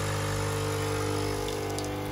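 A Nespresso capsule coffee machine's vibratory pump running with a steady, even hum while it brews coffee into a mug.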